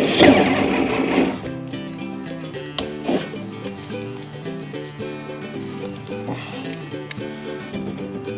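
Background music throughout. Right at the start a cordless drill runs for about a second, boring into the car door's sheet-metal frame, with a second short burst about three seconds in.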